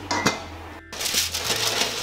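A glass pot lid with a metal rim clinks once as it is set on a stainless-steel pot, with a brief ring. About a second in, rustling of baking paper and small clicks follow as a paper-lined baking tray is drawn out of an oven.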